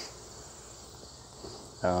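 Steady high-pitched chirring of crickets in the grass, with a faint low rumble of wind on the microphone.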